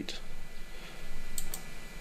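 Two quick clicks about a second and a half in, over a steady low hiss and hum of room noise.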